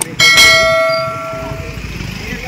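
A click followed by a single bright bell ding, the loudest sound here, that rings and fades away over about a second and a half: the notification-bell sound effect of a subscribe-button animation.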